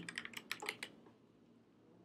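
Computer keyboard typing: a quick run of light keystrokes that stops about a second in.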